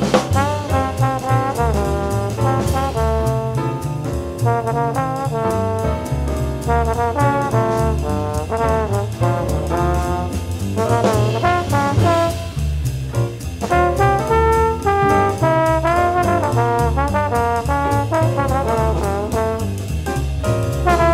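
Small jazz group playing: a trombone carries a moving melody line over a bass line and drums with cymbals.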